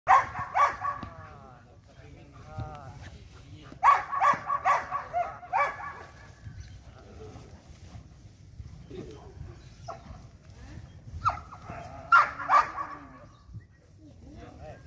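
Belgian Malinois barking during bite-sleeve protection training: a quick group of barks at the start, a run of about six barks around four to six seconds in, and a few more near the end.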